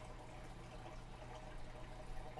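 Faint, steady trickle of water over a low, constant hum from aquarium equipment running.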